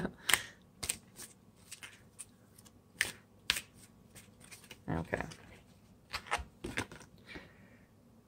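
Large oracle cards being shuffled by hand, held upright: irregular crisp snaps and clicks of card edges striking one another, with a short laugh at the start.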